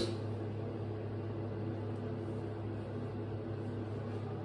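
Steady low hum of a bathroom exhaust fan, an even drone with a few steady overtones. A brief rustle comes at the very start.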